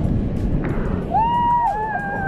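Rushing water noise, with a person's voice calling out in drawn-out, arching tones from about a second in.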